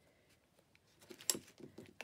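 White cardstock being folded in half and the crease rubbed down by hand: faint rustling and scratching, with a few light clicks in the second half, one sharper than the rest.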